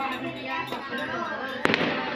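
A firecracker bursting with one sharp bang about one and a half seconds in, over the sound of people's voices.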